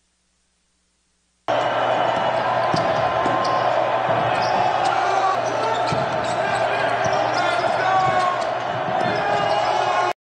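Court sound of a basketball game: the ball dribbled on the hardwood floor amid the short sharp noises of play, with players' voices calling out. It starts suddenly about a second and a half in.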